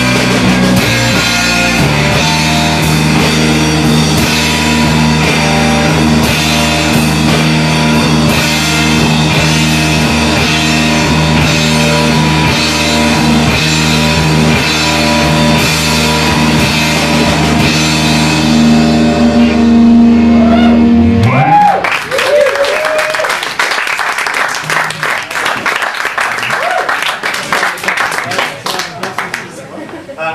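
Live rock band with guitar and drums playing the end of a piece, holding a long low chord that swells louder and then stops abruptly about 21 seconds in. Audience clapping and cheering follows.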